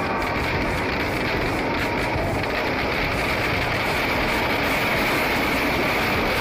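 Steady, dense roar from a burning Dussehra effigy packed with firecrackers, the crackle of the fireworks merged with the noise of a large crowd, loud throughout with no single standout bang.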